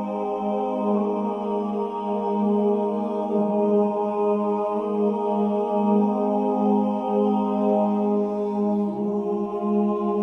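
Closing music of steady held tones forming a drone, its strongest note low and unbroken, with only slight swells in level.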